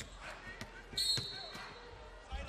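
Referee's whistle blown once about a second in to call a foul: a sudden, steady, high-pitched blast that trails off, over the low hubbub of the arena.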